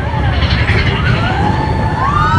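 Roller coaster mine train (Big Thunder Mountain Railroad) running along its track: a loud, steady low rumble of the train and rushing air, with riders letting out long screams that rise and fall.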